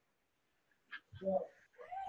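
About a second of silence, then a few short, faint voice sounds, a hesitant syllable or two, leading back into speech.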